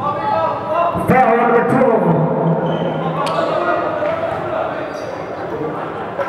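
Voices of players and spectators echoing through a gym during a basketball game, with a basketball bouncing and a few sharp thuds on the court.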